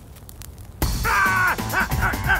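A cartoon caveman's panicked cries, starting suddenly just under a second in with a long wavering yell and breaking into quick repeated yelps, over background music.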